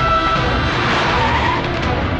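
A film sound effect of a car skidding: a rush of noise that swells and fades within about a second, over dramatic background music.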